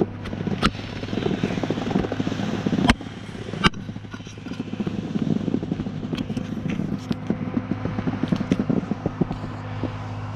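Snowboard sliding and scraping over chopped-up, lumpy spring snow: a continuous crackling rasp with a few sharp knocks as the board hits bumps. Near the end the scraping eases off as the board slows.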